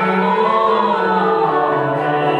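A small mixed vocal ensemble sings classical sacred choral music, holding sustained notes in several parts, with the lowest voice stepping down to a lower note near the end.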